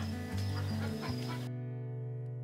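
Background music: a held chord with a steady low note, fading slowly. The outdoor background noise cuts out about halfway through, leaving only the chord.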